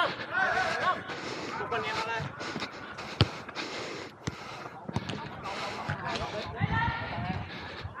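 Players calling out to each other during a football match, with the sharp thud of the ball being kicked a little past three seconds in and a weaker kick about a second later.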